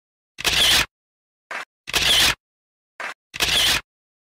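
Camera shutter sound effect, three times about a second and a half apart, each time a photo pops into the collage; a shorter, fainter click comes just before the second and the third.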